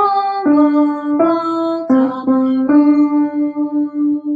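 A woman singing a short phrase alone, without accompaniment: a handful of steady held notes stepping up and down, the last one held longest with a slight waver.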